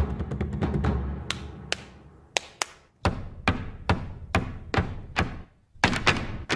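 Drum-heavy music with timpani fades out over the first two seconds. Then single sharp taps of Irish-dance hard shoes ring out one at a time, about two to three a second, with a brief pause just before the end.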